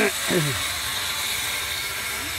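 Open-air market background noise: a steady hiss-like din, with a brief voice falling in pitch right at the start.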